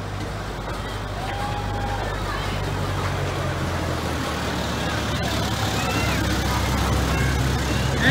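Engine of a miniature park-railway locomotive: a steady low drone that slowly grows louder as the train pulls in and rolls past the platform, with riders' voices faintly over it.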